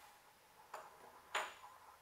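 Two light clicks of small tools being handled, about half a second apart; the second is sharper and louder, with a brief high ring after it.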